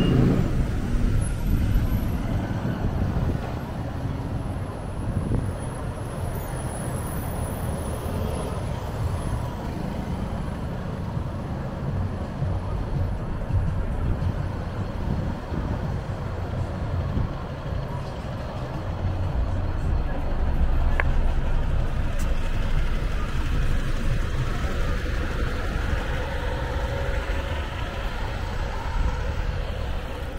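Busy city street traffic: a steady rumble of engines and tyres, with a double-decker bus driving past close by around the middle.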